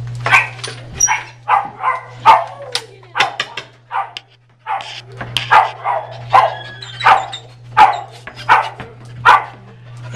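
Small dog yapping and barking in a quick run of short yaps, about two a second, with a brief lull around four seconds in. It is excited at being offered a treat.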